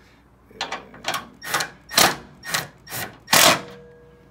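Cordless impact wrench with a 14 mm socket tightening the bracket bolts in about seven short trigger bursts, roughly two a second, the last one the loudest.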